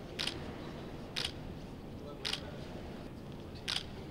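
Camera shutter clicking four times, about a second apart, over a low steady background hum.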